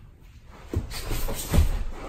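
Two grapplers in gis landing on a foam mat: two thumps, the second and louder one about one and a half seconds in, over the rustle and swish of heavy cotton gi fabric.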